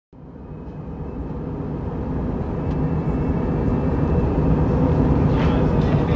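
Low, engine-like rumble fading in from silence and growing steadily louder: a rocket-thrust sound effect.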